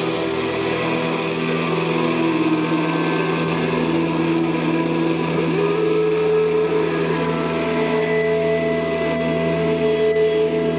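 Distorted electric guitars and bass holding a loud, steady drone of sustained notes with no drums, a few held notes bending slightly in pitch, and a new higher note coming in about halfway through.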